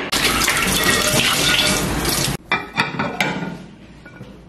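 Kitchen tap running into a sink for about two seconds, then stopping suddenly, followed by a few light knocks as a plate is handled for washing.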